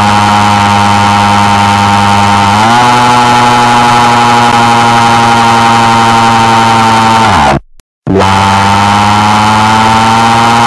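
A very loud, harsh, distorted buzzing sound effect, the kind used as a deliberately ear-splitting cartoon tantrum noise. It holds one low pitch that steps up slightly a few seconds in, then slides down in pitch and cuts out about three quarters of the way through. After half a second of silence it starts again.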